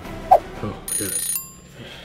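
A short bell-like ring with several high tones, about a second in, lasting half a second and dying away. It comes just after a brief loud vocal sound.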